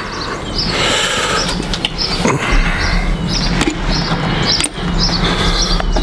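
Songbirds chirping, short calls repeating every half second or so, over a steady low rumble.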